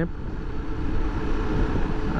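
Honda XRE300 single-cylinder motorcycle engine running at a steady cruise, mixed with wind and road rush on the microphone.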